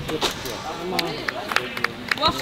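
Several people talking in the background, with a few short, sharp knocks scattered through it.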